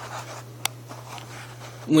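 A pause in a man's talk: a steady low hum with a faint rustle, and one sharp click about two-thirds of a second in. He starts speaking again right at the end.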